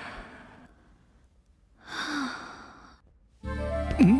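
A breathy sigh about two seconds in, after the fading end of an earlier breath. Film background music comes in near the end.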